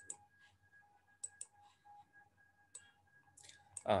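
A handful of light, irregularly spaced computer clicks over a faint steady whine.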